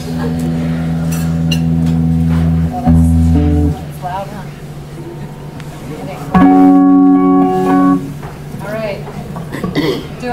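Electric guitar chords picked and left to ring. The first rings for almost four seconds with a change in the notes near three seconds, and after a quieter gap a second chord rings for under two seconds.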